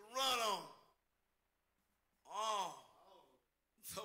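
A preacher's voice giving two drawn-out wordless vocal calls, each rising and then falling in pitch, about two seconds apart with near silence between.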